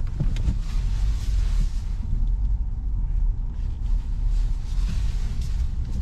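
Car cabin noise as the car moves slowly through a turn: a steady low engine and road rumble with light tyre hiss.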